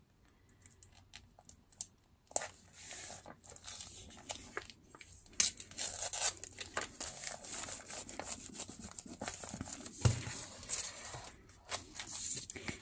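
Washi tape being torn and pressed onto a paper journal page: quiet, irregular crackling rustles and small clicks of tape and paper being handled, starting about two seconds in.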